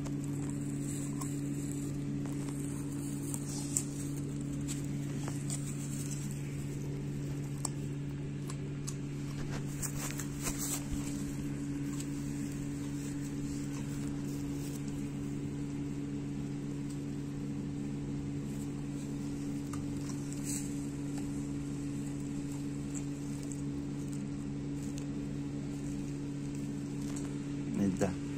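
A steady low hum at two pitches that stays even throughout, with a few faint clicks scattered through it.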